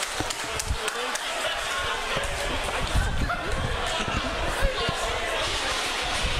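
Wrestlers scuffling on a street pavement: a run of dull thuds and knocks, the heaviest about three seconds in and again a little before the end, under people's voices.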